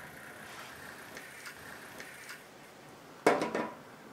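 Small plastic Cubelets robot blocks clacking against each other as they are handled and picked up off a table: a few faint taps, then a short, loud clatter about three seconds in.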